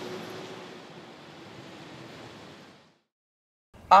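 Steady hiss of street noise on a wet road, with a faint low hum, fading out after about three seconds into a brief silence. A man's voice starts at the very end.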